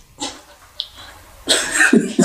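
A person coughing, loudest from about one and a half seconds in, after a softer breathy sound near the start.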